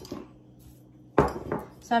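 A small terracotta pot set down hard on the table with a single clunk a little over a second in, followed by a lighter knock.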